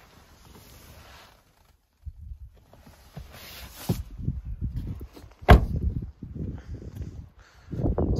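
A pickup's door shut with one sharp, loud slam about five and a half seconds in, amid irregular low rumbling noise on the microphone.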